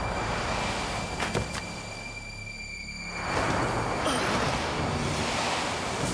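A wind-like rushing noise with a couple of sharp clicks about a second in. It thins out, then swells again about three seconds in.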